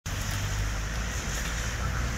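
Steady low rumble and hiss of street traffic on a wet road.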